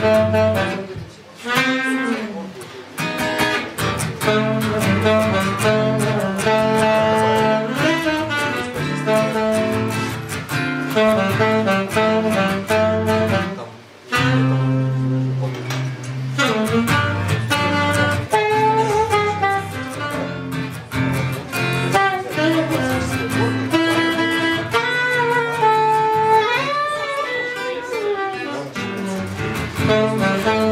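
Live jazz samba on saxophone and acoustic guitar: the saxophone plays the melody over the guitar's chords, with a brief drop in level about halfway through.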